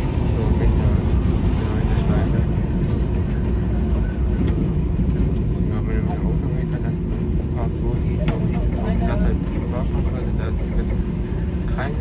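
A vehicle running, heard as a steady low rumble with a faint constant hum, while voices talk indistinctly in the background.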